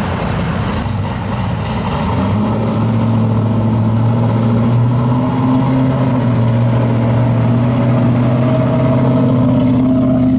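Classic muscle-car V8 engines running at low speed in slow traffic, a steady deep engine note that grows louder after about two seconds as a car draws close.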